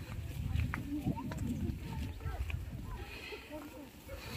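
Footsteps of a group walking through tall grass, over a low, uneven rumble on the microphone, with faint voices now and then.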